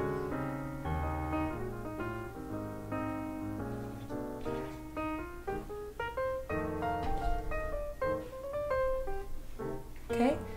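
Background piano music: a melody of held notes and chords that change every half second or so.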